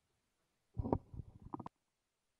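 Rustling handling noise close to the microphone: about a second of irregular low rumbling, ending in a few sharp clicks.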